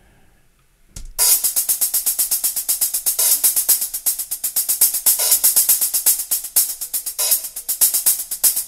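Sampled hi-hat from the MINDst Drums virtual drum kit playing a fast, even run of about eight hits a second, starting about a second in. A velocity randomizer varies how hard each hit lands, so the strokes rise and fall in loudness.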